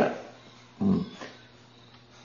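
A man's short 'ừ' of assent, a brief grunt-like sound, then quiet room tone with a faint steady hum.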